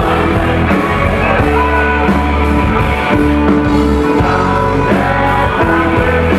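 Live rock band playing loudly, with drum kit, bass and electric guitar under several singers' voices through microphones.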